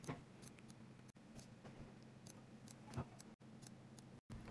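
Faint handling sounds as a Sharpie marker is worked on a painted fingernail: light scattered ticks and two soft knocks, one just after the start and one about three seconds in, over a low steady hum. The sound drops out briefly twice.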